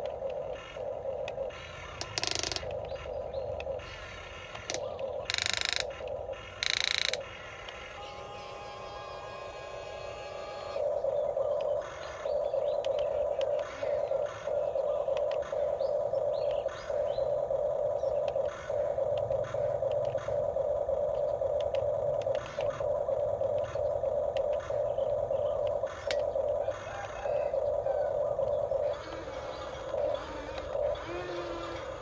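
Electric motors and gearboxes of a radio-controlled toy excavator whining as it swings and works its arm. The whine comes in short spells at first, with a few sharp bursts, then runs steadily for much of the second half, broken only by brief gaps.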